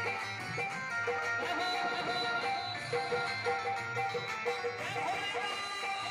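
Roland XPS-10 electronic keyboard playing a devotional bhajan melody over a steady built-in drum rhythm, the notes repeating in a short phrase.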